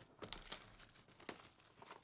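Clear plastic shrink wrap being torn and peeled off a trading-card box: faint crinkling with scattered sharp crackles.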